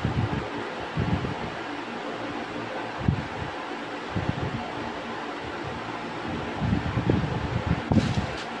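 Steady rushing background noise, like a running fan, with a few soft low thumps scattered through it.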